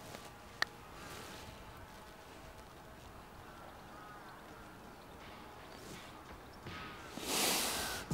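A putter strikes a golf ball once, a single sharp click just after the start, on a birdie putt. Faint background follows while the ball rolls, and a short rush of noise rises near the end.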